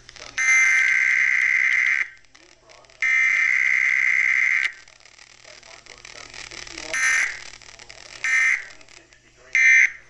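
Emergency Alert System SAME data tones for a required weekly test, heard through a small portable radio's speaker. Two long header bursts of warbling two-pitch data tones are followed by three short end-of-message bursts about a second apart.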